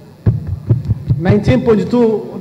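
A man's voice over a microphone pauses, then a series of low, dull thumps about four or five a second, and his speech resumes about one and a half seconds in.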